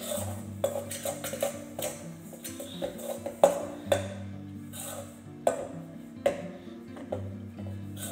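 A spoon knocking and scraping against a stainless steel mixing bowl while stirring a stiff peanut butter and powdered sugar dough, with several sharp clinks, the loudest about three and a half and five and a half seconds in. Background music plays throughout.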